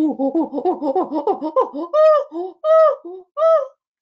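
A woman's imitation of a chimpanzee pant-hoot: low hoots build into quick rising in-and-out pants, then three loud, higher hoots near the end. It is offered as a chimpanzee self-introduction, meaning 'me, Jane'.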